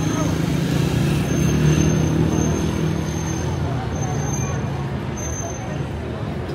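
Busy street ambience: a crowd's voices over a steady low motor rumble that swells about a second in and eases off after three seconds, with a faint high whine on and off.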